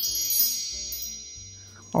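Chime sound effect marking a scene transition: a cluster of bright ringing tones that starts at once and fades away over about two seconds.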